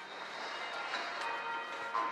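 Cathedral bells ringing, several bells struck one after another in a ringing sequence.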